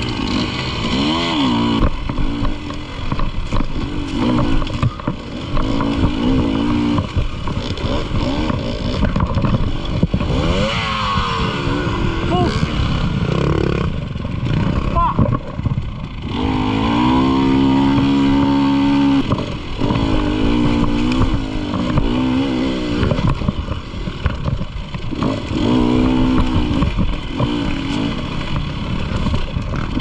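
Dirt bike engine ridden hard on a rough trail, its pitch climbing and dropping again and again as the throttle is worked. Past the middle it holds one steady note for about two and a half seconds. Knocks and rattles from the bumps run through it.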